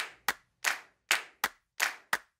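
Clap percussion in a news intro jingle: about six sharp claps at uneven spacing, with no other instruments playing.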